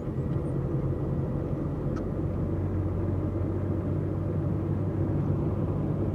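Steady low drone of a Nissan's engine and road noise heard from inside the cab while driving at speed.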